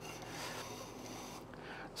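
Long flax fibres being drawn through the steel pins of a hackle comb, a faint rubbing rasp as the tangles are combed out and the line is straightened.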